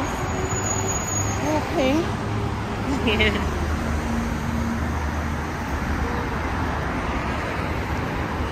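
Steady road-traffic noise from cars and buses on a city street, with a few brief snatches of passing voices.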